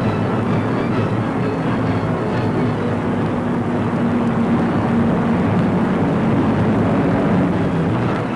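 Steady drone of a four-engined propeller airliner's piston engines as it climbs away after takeoff, with orchestral music underneath.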